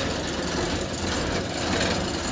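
Dump truck's diesel engine running with a steady low drone, heard from inside the cab.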